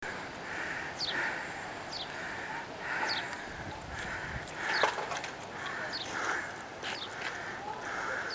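Birds calling over and over: short chirps falling in pitch, about one a second, over a steady pulsing call.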